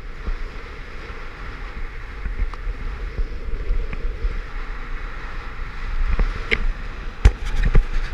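Wind rushing over the camera's microphone during a parachute descent under an open canopy: a steady noisy rumble, with a few sharp knocks near the end.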